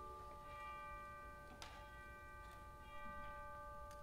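Pipe organ holding a soft, sustained chord, some of its lower notes changing about a third of a second in, with a faint click partway through.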